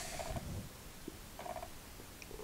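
Faint, low handling noise from fingers turning pieces of a steel-ball pyramid puzzle, with no clear clicks of ball on ball.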